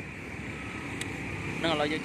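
Steady road traffic noise from motorbikes passing along the street, with a faint click about a second in.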